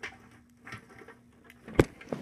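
Handling noise as a plant is hung inside a mantis enclosure: faint clicks and rustles, then one sharp knock near the end.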